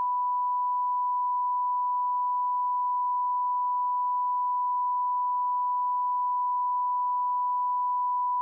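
A steady, unchanging 1 kHz test tone, like a long beep, dubbed over the video in place of the original sound. It marks a break in the audio.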